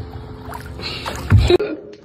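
Motorboat on open water: a steady low rumble of the boat running, with water and wind rushing, swelling loudest about a second and a half in, then cutting off abruptly.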